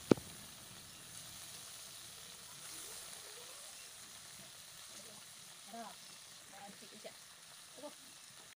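Small morola fish (mola carplets) frying in oil in an iron kadai: a faint, steady sizzle. A sharp click comes right at the start.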